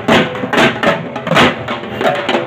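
A group of large barrel drums beaten with sticks, played together in a fast, loud rhythm with heavier accented strokes about every half second.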